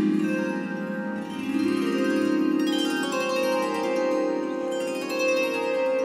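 Swarmandal, an Indian zither, strummed in sweeps across its many strings, the notes ringing on and overlapping into a shimmering wash. A fresh sweep comes about a second and a half in and another near the end. Its strings are tuned to the notes of a raga, with the important notes doubled.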